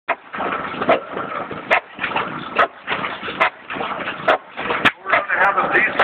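Huge 200 hp engine turning slowly at about 200 rpm, giving a regular sharp beat a little more than once a second, with crowd voices around it.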